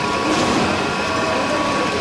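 Paper straw making machine running: a steady mechanical noise with a faint constant whine, no changes in rhythm or level.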